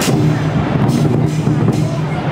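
Chinese lion dance percussion: drum beats with cymbal crashes, three strong strokes less than a second apart over a steady low rumble.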